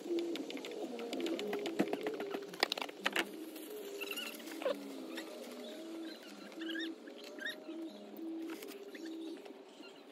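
Oil filter housing cap being unscrewed from the engine: a few sharp clicks as the filter wrench breaks it loose in the first three seconds, then repeated short squeaks as the cap and its sealing ring rub against the housing while it is turned by hand.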